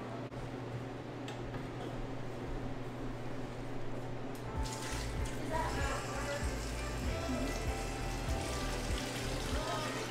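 Almond milk pouring from a plastic measuring jug into a large plastic tub, starting about halfway in, over background music.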